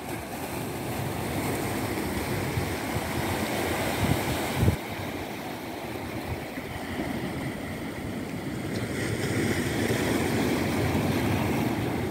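Sea waves washing and breaking on a rock breakwater, a steady rushing that swells slightly toward the end, with wind buffeting the microphone. A brief low thump about four and a half seconds in.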